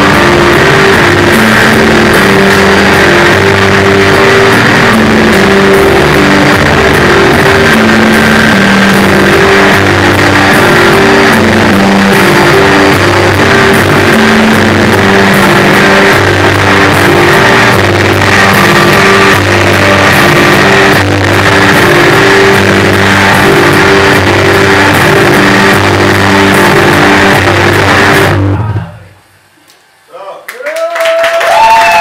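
Loud live band music: a repeating, stepping low figure under a dense, noisy guitar-like layer, which stops abruptly near the end.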